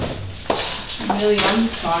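Two sharp clicks about half a second apart, then a woman's voice starting to speak in the second half.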